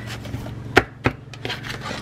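Sticker sheets and a clear plastic sleeve being handled on a tabletop: light rubbing and rustling, with two sharp taps, the first, a little under a second in, the loudest and the second just after a second.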